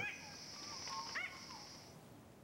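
Faint rainforest field sound: a steady high insect buzz, with a few soft whistled bird notes, one rising sharply about a second in. The buzz cuts off just before the end.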